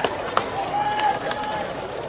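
High-school baseball players shouting drawn-out calls across the field during pregame fielding practice, with a sharp crack at the start and a couple of lighter clicks of ball on bat and glove.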